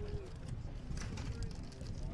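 Open-air ballpark ambience: a low background of distant crowd voices and field noise, with a short steady tone right at the start and a fainter one about a second and a half in.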